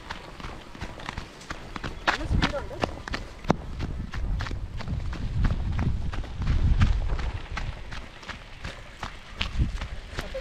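Irregular crunching and clicking of footsteps or tyres on dirt and loose gravel, with wind rumbling on the microphone.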